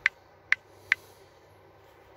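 Three short, sharp clicks of keys being tapped on a smartphone's on-screen keyboard, the first right at the start and the other two about half a second apart, over faint room tone.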